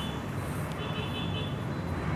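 Steady low rumble of road traffic in the background, with a brief high squeal a little under a second in.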